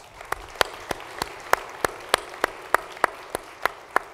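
Audience applause, with one pair of hands clapping close by in a steady rhythm of about three claps a second, louder than the rest.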